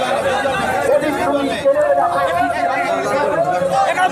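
A crowd of marchers talking at once: a babble of many overlapping voices, with no single speaker standing out.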